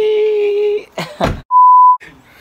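A voice holds a long drawn-out note, then a short vocal burst. Near the end a loud, steady, high-pitched censor bleep sounds for about half a second, covering a word.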